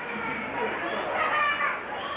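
High-pitched children's voices, calling and chattering, over a general murmur of people, loudest about one and a half seconds in.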